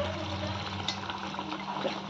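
Thick mutton gravy bubbling and sizzling in a nonstick pan while a slotted spatula stirs through it.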